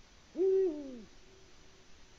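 Male Eurasian eagle-owl giving a single deep hoot, under a second long: it rises sharply, holds, then falls away.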